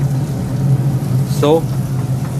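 Steady low hum of commercial kitchen equipment, unchanging throughout, with a single short spoken word near the middle.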